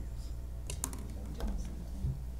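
A few short clicks and taps, loudest near the middle, over a steady low hum in a meeting room, with soft murmured voices.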